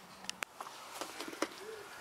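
Faint, low cooing call of a pigeon or dove near the end, with two light clicks about half a second in.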